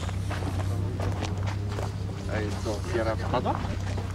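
Voices of several people talking, with handling clicks, over a steady low hum.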